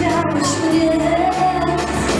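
Live pop music: a band with electric guitar, acoustic guitar and keyboards playing steadily while a singer sings a melody into a microphone.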